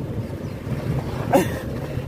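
Steady low rumble of road and engine noise inside a moving car's cabin. About one and a half seconds in there is a brief, sharp voice sound from the man, just before he bursts out laughing.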